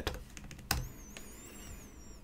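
A few keystrokes on a computer keyboard as terminal commands are typed and entered, the sharpest about two-thirds of a second in. A faint wavering high whine runs through the second half.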